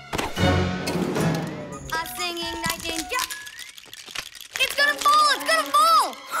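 Cartoon soundtrack: background music, with a sharp crash just at the start and wordless character voices near the end.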